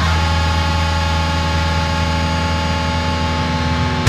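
Distorted electric guitars holding one sustained, effects-laden chord in a heavy metal cover, a steady noisy wash of many held tones with no drum hits.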